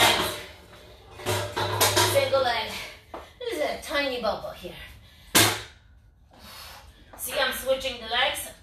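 A voice in three phrases over music, with one sharp knock about five and a half seconds in, the loudest sound.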